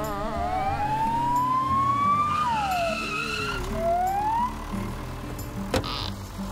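Cartoon ambulance siren wailing over background music: the tone wavers, rises slowly for a couple of seconds, drops quickly, then rises again. A short sharp knock comes near the end.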